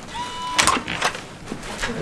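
Electronic key-card door lock giving one short steady beep as the card is read, followed by a few sharp clicks of the latch and handle as the door unlocks.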